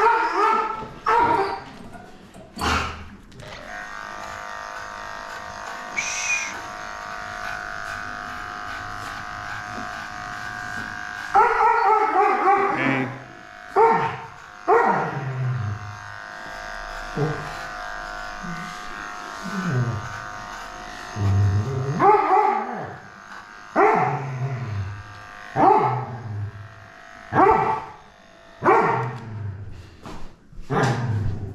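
A matted old dog barking repeatedly while being shaved, each bark falling in pitch: a few at the start, a pause of several seconds, then a bark every second or two through the rest. During the pause the electric dog clippers are heard running steadily.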